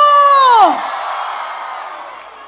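A woman's long shout over a microphone and PA, held on one high pitch and then dropping away about two-thirds of a second in. Crowd cheering follows and fades.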